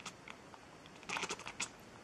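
A quick run of small, sharp clicks and taps about a second in, lasting under a second.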